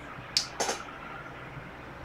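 Two sharp clicks from a computer keyboard or mouse, about a quarter of a second apart and a little under half a second in, over faint room tone.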